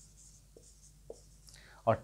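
Whiteboard marker writing on a whiteboard, a faint high scratching with a couple of light ticks as the strokes of "32x" are made.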